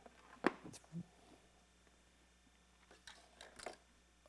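Faint handling noise: a few sharp clicks and a dull knock as a plastic Lego set is lifted out of a box, then a cluster of small clicks near the end as it is set down on the tabletop.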